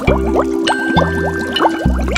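Background music with a steady bass beat and a run of quick rising bloops, several a second.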